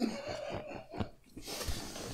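A person laughing quietly and breathily, with a sharp click about a second in.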